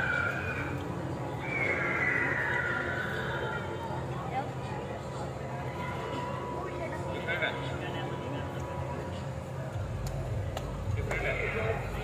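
Cotton candy machine's spinner motor running with a steady hum while floss is wound onto a stick. A high, falling whinny-like cry sounds about two seconds in, and voice-like sounds return near the end.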